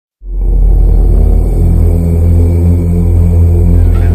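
Loud intro music opening on a deep, steady drone that starts abruptly just after the beginning and holds without a break.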